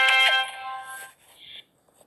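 A short synthesized musical sting with a bright, chime-like chord. It starts at full loudness, holds for about half a second, then fades out over the next second.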